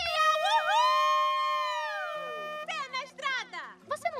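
A cartoon character's loud, long, high-pitched vocal cry: it swoops up, holds for about a second, then slides down. Quick high chatter follows near the end. The noise is loud enough to be scolded as scaring the fish.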